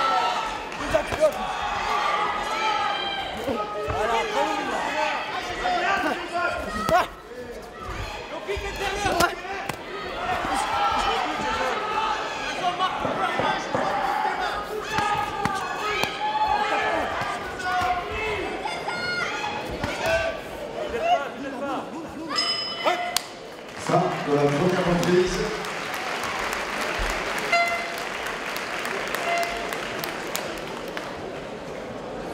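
Kickboxing bout in a large hall: voices of coaches and spectators shouting over one another, with gloved punches and kicks landing as sharp slaps and thuds every few seconds.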